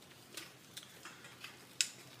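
A few faint clicks and ticks from a metal pole clamp and extension pole being handled, with one sharper click near the end.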